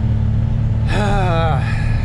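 A farm tractor's diesel engine running steadily, heard from inside the cab. About a second in, a man gives a short voiced sigh that falls in pitch.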